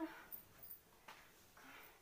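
Near silence in a room, opening with a brief wordless sound from a woman's voice that trails off in the first fraction of a second.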